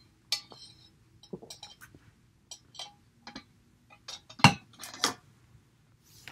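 Drinking water through a metal straw from a tumbler: small clinks and sips, then two louder knocks about four and a half and five seconds in as the cup is put down.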